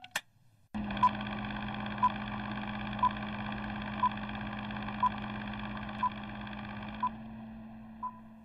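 Film-leader countdown sound effect: a short high beep about once a second over a steady whirring hum. The beeps stop near the end and the hum begins to fade.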